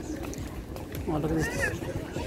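Outdoor street market ambience with a steady low background rumble, and one short, drawn-out voice sound with a bending pitch about a second in.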